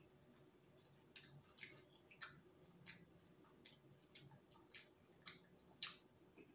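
A dry, stale croissant crackling faintly as it is spread with a knife and eaten: about ten sharp, irregular clicks over a few seconds.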